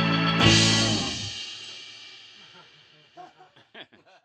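A blues band's closing chord on electric guitar and bass: one last full hit about half a second in, then the chord rings out and fades away over about two seconds. A few faint short sounds follow near the end.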